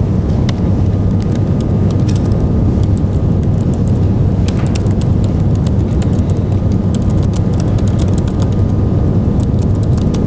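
Computer keyboard typing: irregular runs of light clicks that come thicker near the end, over a steady low rumble of room or microphone noise.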